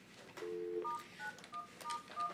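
Telephone touch-tone (DTMF) keypad beeps while a call is being transferred to a conference bridge: a short two-tone beep, then about four quick key tones as digits are entered.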